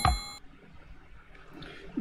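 A high electronic ding, the bell sound effect of a subscribe-and-notification animation, fading away within the first half second, followed by faint room tone.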